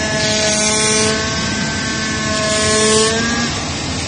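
Oscillating knife CNC cutting machine cutting through a white board: a steady buzzing hum with a hiss that swells and fades twice. The hum stops about three and a half seconds in as the cut ends, leaving a steady rushing noise.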